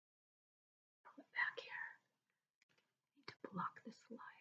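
A woman whispering softly under her breath in two short stretches, with a couple of faint clicks near the end.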